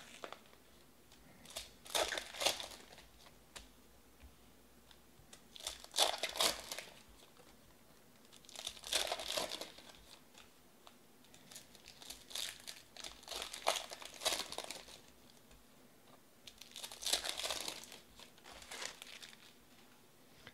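Foil trading-card pack wrappers being torn open and crinkled by hand, in short bursts every few seconds.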